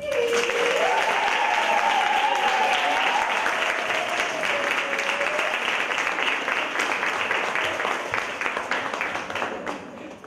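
An audience starts applauding all at once as the dance music ends, and the applause fades out near the end. Over the first half a single voice lets out a long, drawn-out cheer that rises, holds and then falls away.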